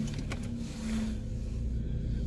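Car engine idling with a steady low rumble, just after being started, heard from inside the cabin, with a couple of light clicks near the start.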